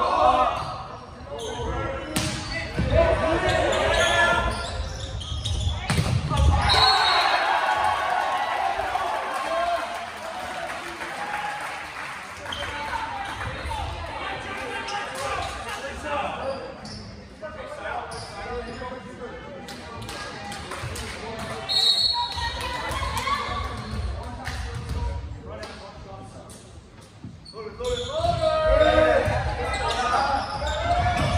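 Indoor volleyball rally in a gym: the ball is struck and bounces off the hardwood floor while players shout calls to each other, all echoing in the hall.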